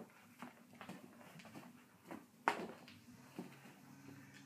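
Faint swishing and soft taps of two flat-brimmed baseball caps being swung and handled, with one sharper tap about two and a half seconds in.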